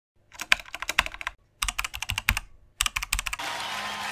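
Typing sound effect: three quick runs of keyboard key clicks with short gaps between them. Near the end a steady crowd noise comes in.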